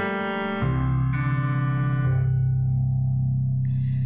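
Instrumental song intro on keyboard: electric-piano chords that ring and fade, with a deep bass note coming in under them about half a second in.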